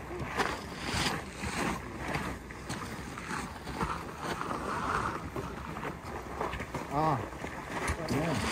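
Footsteps and walking sticks of a group of hikers on a forest trail, a run of irregular knocks and scuffs, with wind noise on the microphone. A person's voice is heard briefly about seven seconds in.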